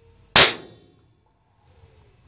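A single loud, sharp bang as a high-voltage capacitor, charged by a ZVS driver and flyback, discharges through a TV speaker, dying away within about half a second.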